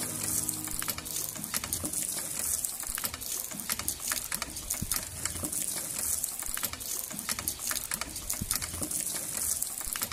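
Hand pump being worked by its handle: water gushing from the spout into a concrete basin, with many irregular clicks and knocks from the pump's moving parts.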